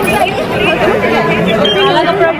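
Several people talking at once close by: overlapping, unscripted chatter.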